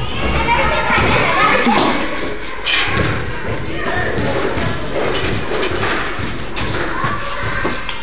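Indistinct children's voices in the background with repeated dull thuds throughout.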